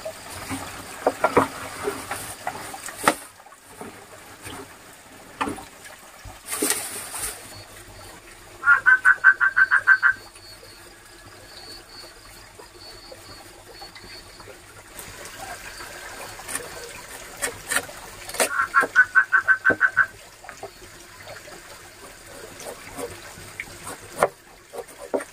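An animal call in rapid pulses, about ten notes in a second and a half, heard twice about ten seconds apart, among scattered knocks and rustles.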